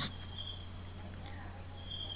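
Steady high-pitched whine over a low electrical hum and faint hiss: the background noise of the recording, heard in a pause between words.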